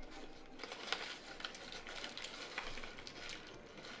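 Faint close-miked chewing of a bite of burger: small, irregular wet mouth clicks.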